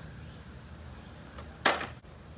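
A short swish about one and a half seconds in, as a carded die-cast toy car in its plastic blister pack is swung past the microphone, over a low steady background hum.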